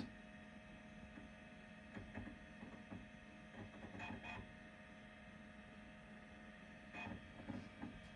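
Apple Macintosh SE running with a faint steady hum, and a few soft clicks of disk access about two, four and seven seconds in as it boots from the Welcome to Macintosh screen toward the desktop.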